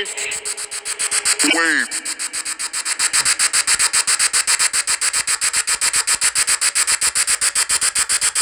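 A ghost-hunting app's spirit-box sweep: rapid, evenly chopped static that pulses several times a second, with a short warbling voice-like fragment about a second and a half in.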